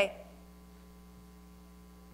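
A woman's voice says one short word at the very start, then a faint, steady electrical mains hum fills the rest of the pause.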